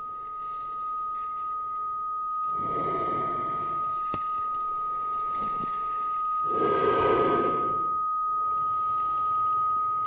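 A steady, high-pitched electronic beep tone held without a break, with two short bursts of rushing noise about three and seven seconds in.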